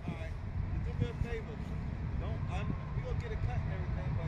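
Faint, distant talking from another person over a steady low rumble outdoors.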